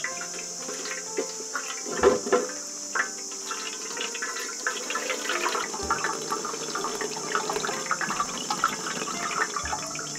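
Liquid splashing and trickling as a wet cloth bag is squeezed and wrung by hand, the milky liquid running through a plastic basket into a pot. There are a few louder splashes about two seconds in, then steady trickling and dripping.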